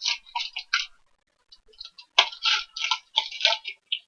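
Foil wrapper of a basketball trading-card pack crinkling and tearing as it is ripped open by hand. It comes in irregular crackly bursts, with a brief lull about a second in.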